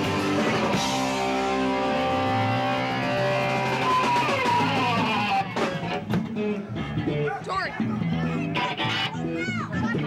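Amateur rock band playing live, electric guitar in front. The full band sound breaks off about five and a half seconds in, leaving high-pitched young voices shouting over scattered guitar notes.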